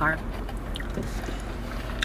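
Steady low rumble of a car's engine and road noise heard from inside the cabin, with a few faint clicks.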